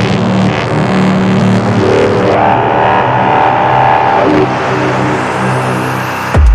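Minimal techno in a breakdown: held synth chords and pads with no kick drum. Near the end a noise sweep rises in pitch, building up to the beat's return.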